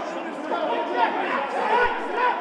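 Many voices of spectators talking and calling out over one another, none clearly standing out.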